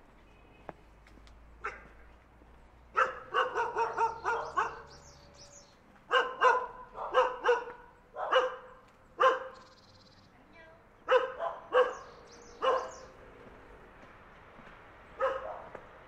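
A dog barking, first in quick runs of several barks, then in single barks about a second apart, with a pause of a couple of seconds before a last bark near the end.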